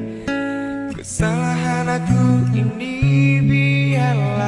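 Music: an acoustic guitar playing chords over a low bass line, with a sharp strum about a second in.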